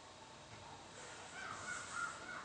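Faint room tone with a short, faint animal call in the second half, its pitch rising and falling.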